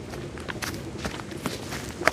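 Footsteps scuffing and crunching on a dirt and gravel path: a run of irregular steps over steady outdoor background noise.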